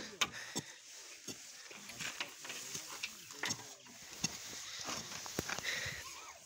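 Faint, scattered light knocks and clicks of a solar panel being handled and stood upright, with soft faint calls in the background.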